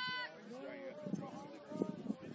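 Rugby players and sideline spectators shouting: a high-pitched drawn-out call ends just after the start, followed by scattered distant calls and voices.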